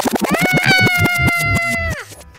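A person laughing in rapid pulses that turn into a high-pitched squeal, held for over a second and cut off suddenly.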